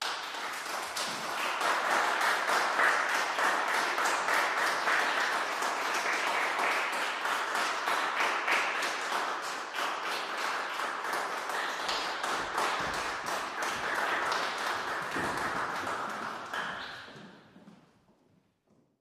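Audience applauding with dense, steady clapping that fades away near the end.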